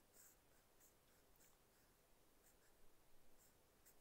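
Near silence with the faint scratching of a mechanical pencil drawing on notepad paper, a few short strokes a little louder about three seconds in.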